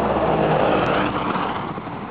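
A motor vehicle driving by on the street. Its noise is loudest in the first second, then dies away.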